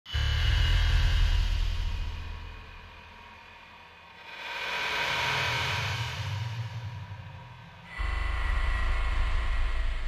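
Opening music and sound effects: a deep rumble that fades away, a swelling whoosh in the middle, then another deep rumble that starts abruptly about eight seconds in.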